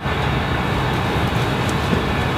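Steady outdoor background noise: a low rumble with an even hiss over it, cutting in abruptly at an edit and holding level, with no distinct events.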